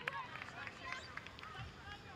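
Faint ambience of an outdoor football pitch: distant players' voices and short calls over a low background hiss.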